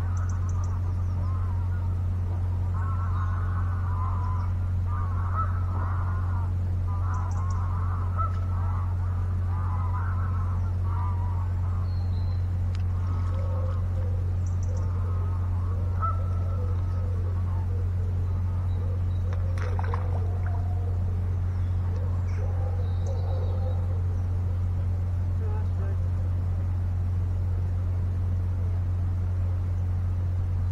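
Waterfowl calling in the distance on and off through the first two-thirds, over a steady low hum.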